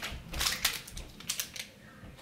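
Crinkling and clicking of items being handled, likely packaging such as protein-bar wrappers. It comes in three short clusters, the densest about half a second in, and dies away near the end.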